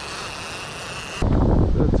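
A faint hiss with a thin, steady high whine. About a second in, it cuts suddenly to loud wind buffeting the microphone over beach surf.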